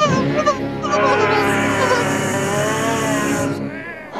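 Cartoon soundtrack: background music with a cartoon character's wordless voice effects in short, wavering pitched bursts, and a high hissing sound effect in the middle.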